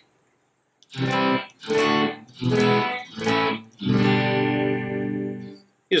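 Electric guitar strumming a short sequence of five basic chords, about one chord every 0.7 seconds, the last chord left ringing out for over a second.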